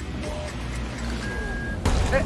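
Arcade racing game sounds over background music: a steady engine hum, a held beep just past the middle, and a sharp crash near the end as a car is rammed into the wall.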